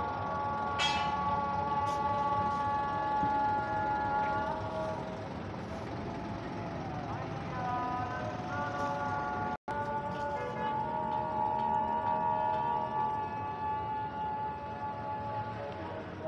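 Long, steady truck horn tones, each held for several seconds with a change of pitch between them, over a diesel engine idling. The sound drops out for an instant a little past the middle.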